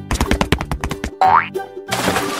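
Cartoon sound effects over background music: a quick run of sharp knocks, then a short rising whistle-like boing. A splash starts right at the end.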